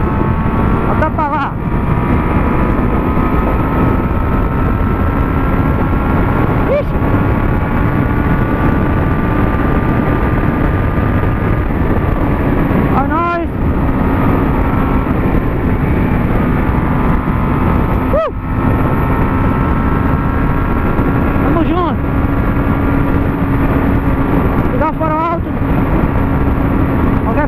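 Honda CB600F Hornet's inline-four with an Atalla 4x1 exhaust, cruising at a steady highway speed under heavy wind rush on the microphone. The engine note holds nearly level, with a few brief dips.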